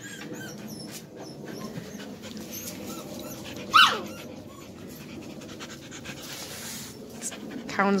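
Australian Shepherd puppies moving about on grass, with soft scuffling and ticking. About four seconds in, a puppy gives one short, high yelp that falls steeply in pitch.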